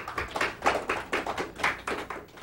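Audience applauding, many separate claps close together, thinning out near the end.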